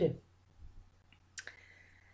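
A single sharp click about one and a half seconds in, in an otherwise quiet pause, with a fainter tick shortly before it.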